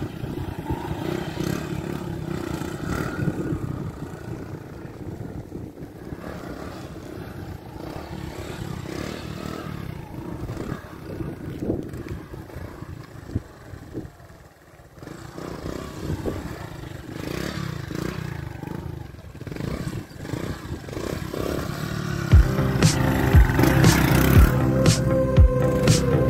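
A small step-through motorcycle engine revving and running as the rider pulls wheelies. About 22 seconds in, louder music with a steady beat comes in over it.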